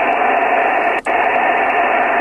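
Steady hiss of band noise from a Yaesu FT-857D transceiver's speaker while receiving upper sideband on the 10-meter band, with no voice on the frequency. The hiss drops out briefly about a second in.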